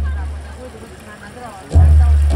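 Amplified dance accompaniment over the venue's speakers: a deep, booming drum beat dying away, then a fresh strike about three-quarters of the way through, with faint wavering voice lines above it.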